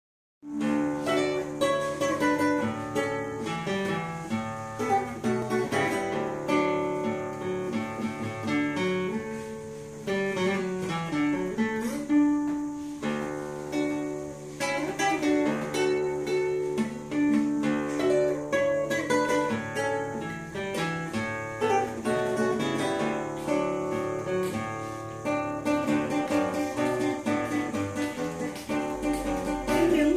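Nylon-string classical guitar played fingerstyle: a plucked melody over a moving bass line, played on without a break.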